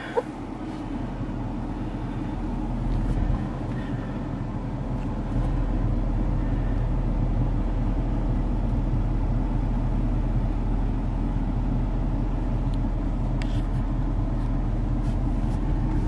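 Ford 6.7-litre Power Stroke V8 turbodiesel idling steadily, heard from inside the cab; the hum grows a little louder about five seconds in and stays level.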